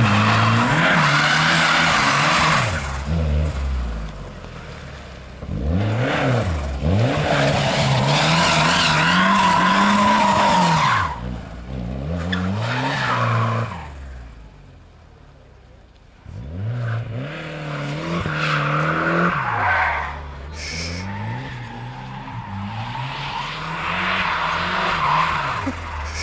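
Autotest car's engine revving hard and dropping back again and again as it is driven through tight turns, with tyres squealing in long stretches. It fades briefly about halfway through, then picks up again.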